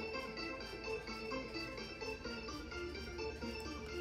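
An iPhone 15 Pro Max ringing: an electronic ringtone melody at a steady, undiminished volume. This is the normal ring once the Attention Aware features are switched off, so the ringer no longer fades when the phone is looked at.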